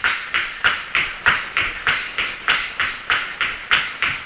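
Quick, even footfalls of a person doing a high-knee run in place, about three steps a second.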